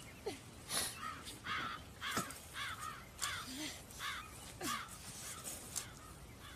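A bird calling harshly over and over, about nine short calls spread unevenly through the six seconds.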